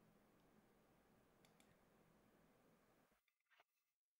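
Near silence: faint room hiss with a few faint clicks.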